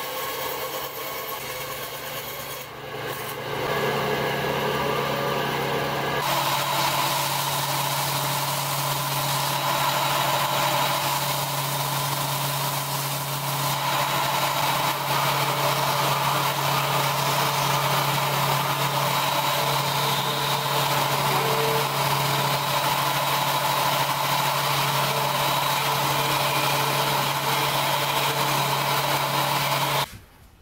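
A bandsaw cutting wood for the first few seconds, then a belt-and-disc sander running with its abrasive disc grinding the end of a wooden strip: a steady motor hum under a continuous rasping noise.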